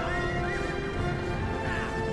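A herd of horses galloping, hoofbeats drumming, with a whinny at the start and another near the end, over film-score music with long held notes.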